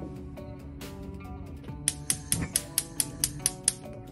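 Background music plays throughout. From about two seconds in, a run of sharp clicks comes about five times a second for nearly two seconds: a gas hob's electric spark igniter clicking as a burner knob is held in.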